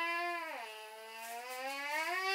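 A young child's voice holding one long, drawn-out whining note that drops in pitch about half a second in and rises again near the end.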